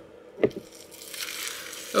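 Trash being crumpled by hand: a short knock about half a second in, then about a second of crinkling.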